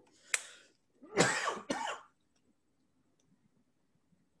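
A man coughs twice: a short cough about a third of a second in, then a longer, louder one at about one to two seconds.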